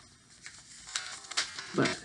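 A rolled-up paper tube handled and twisted in the hands: a few faint paper crinkles and rustles.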